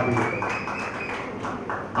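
A pause in a man's amplified speech: low background room noise with faint taps and a thin, steady high tone that fades out about a second in.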